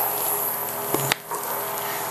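Several small battery-powered vibrating toy bugs buzzing and rattling as they run over a tile floor, with one sharp click about a second in.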